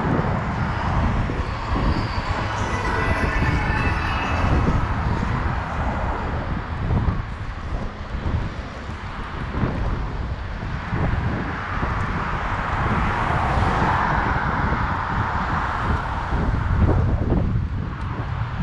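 Wind rumbling on the microphone of a camera moving along a street, with road traffic behind it. A broader rushing swell rises and fades about eleven to sixteen seconds in.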